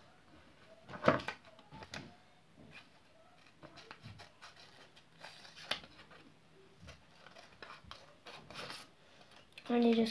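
Scissors snipping through paper in a few short, separate cuts, with quiet gaps between them.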